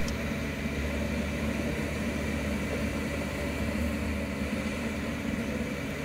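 Bobcat E42 compact excavator's diesel engine running at a steady, even hum while it digs earth.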